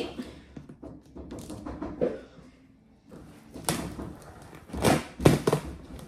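A small knife cutting and scraping along packing tape on a large cardboard box, with the cardboard rustling. In the second half come several sharp rips and thunks from the tape and box flaps.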